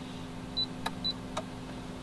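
Induction cooktop touch controls being pressed: a short high beep about half a second in, then two sharp taps on the glass, over a steady low hum.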